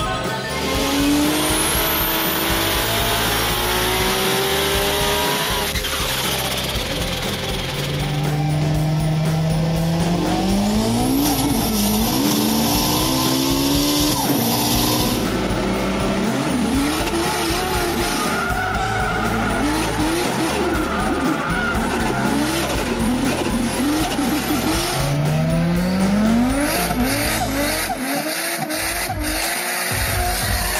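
Race car engine revving hard, its pitch climbing and dropping again and again as if shifting up through the gears, with a rising whoosh about a second in.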